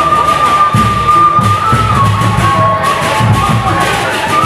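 Sasak gendang beleq procession music: large drums beating under a wind instrument that holds long high melody notes, stepping down a little about halfway through.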